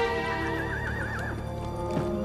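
A horse whinnies once for about a second, its pitch wavering and falling, over held notes of soundtrack music.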